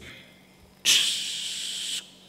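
A man making a steady hissing "shhh" with his mouth for about a second, starting about a second in, imitating falling rain.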